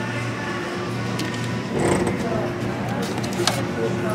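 Supermarket ambience: background music and indistinct voices over a steady low hum, with a few brief clicks of plastic packaging being handled in the second half.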